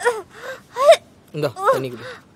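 A woman gasping for breath in several short, strained, high-pitched gasps, as if choking, with a man's low voice briefly near the end.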